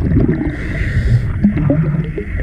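Underwater sound through an action camera's housing: low rumbling water noise with scattered knocks, and a brief hiss a little after half a second in.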